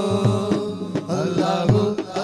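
Male voice singing an Urdu devotional praise song (madh) into a microphone, the melody held and turning in long lines, over a steady low percussion beat.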